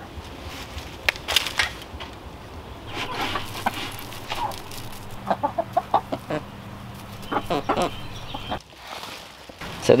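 Hens clucking as they peck and scratch for food: a string of short calls every second or so over a steady low hum, dropping away near the end.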